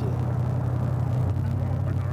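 Steady low vehicle rumble heard from an open convertible on the road, its pitch shifting slightly a little past halfway.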